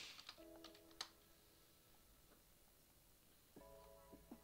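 Faint computer keyboard keystrokes in the first second, ending with a sharper key click about a second in as a search is entered; then near silence, with faint music starting shortly before the end.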